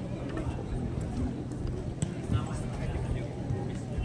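Indistinct voices of people chatting among a crowd outdoors, with a steady low rumble underneath.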